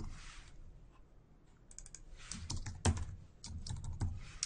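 Typing on a computer keyboard: a short lull, then irregular clusters of keystrokes from about one and a half seconds in.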